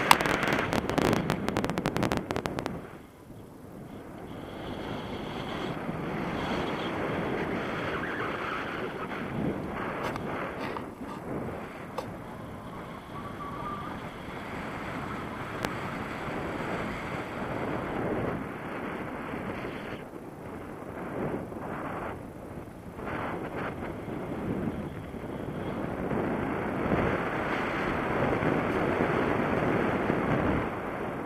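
Wind rushing over the camera microphone in flight under a tandem paraglider. It is loudest and choppiest in the first three seconds, then settles into a steady rush that swells and eases.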